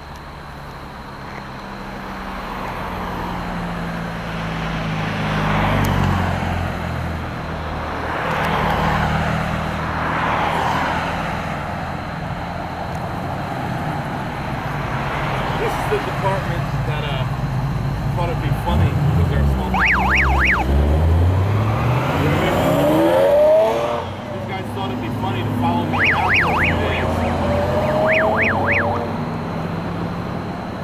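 Road traffic passing close by: cars and trucks swelling and fading one after another, with low engine sound, and one vehicle's engine climbing in pitch as it speeds up about two-thirds of the way through. Brief runs of quick, high chirps come near the middle and again near the end.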